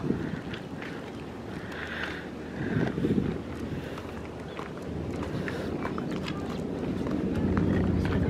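Outdoor background with wind on the microphone and a low rumble that grows louder in the second half.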